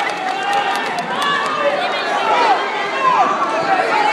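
Spectators' many overlapping voices, talking and calling out at once, with no single voice standing out.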